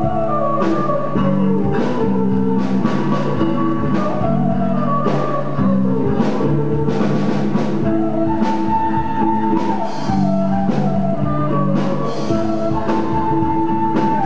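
Live instrumental rock-band cover with a flute playing the melody in long held notes over electric guitar, bass guitar and a drum kit keeping a steady beat.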